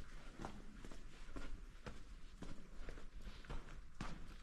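Footsteps walking at a steady pace, about two steps a second, along the floor of a salt-mine tunnel.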